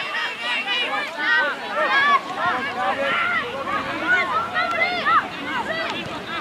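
Several high-pitched young voices shouting and calling over one another without clear words, as in the shouting of players and onlookers during a ruck in a schoolboy rugby match.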